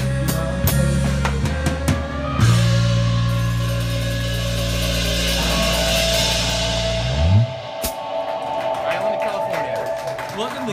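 Live rock band with drum kit, bass guitar and Sabian cymbals playing the end of a song: drum strokes, then a big hit about two and a half seconds in with cymbals ringing over a held bass note. Near eight seconds the bass slides down and a last hit ends the song, leaving a steady held tone from an amplifier.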